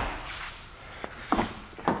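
Car doors of a 2017 Kia Cadenza: the rear door slams shut right at the start and the sound dies away, then short latch clicks as the front passenger door is opened.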